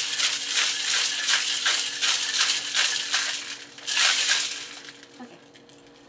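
Ice rattling inside a metal cocktail shaker shaken hard, about three strokes a second, with a louder flurry about four seconds in before it stops shortly before five seconds.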